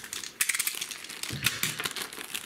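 Small plastic packet crinkling and crackling in the hands as it is being opened, a quick irregular run of sharp crackles.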